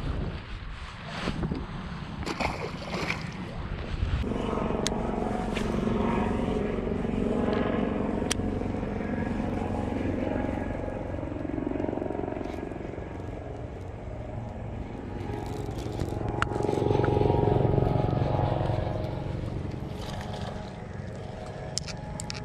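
A motor engine drones steadily, starting about four seconds in and swelling louder twice. Before the drone, a few sharp clicks.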